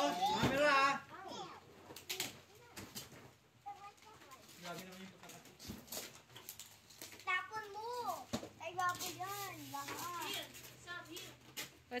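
Young children's voices chattering and calling out while playing, with a few sharp clicks in between.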